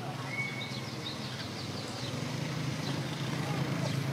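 Car engine running at low speed on grass, a steady low hum that grows louder as the car comes closer.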